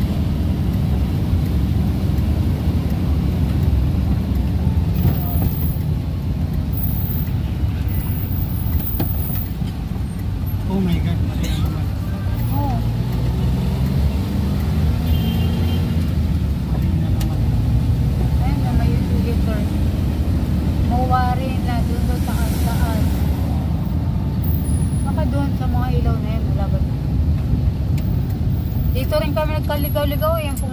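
Steady low road and engine rumble heard from inside a moving vehicle driving in city traffic.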